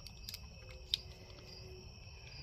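Faint clicks and light ticks of a plastic governor gear assembly from a Briggs & Stratton single-cylinder engine being handled as its pin is pushed out, with one sharper click just under a second in.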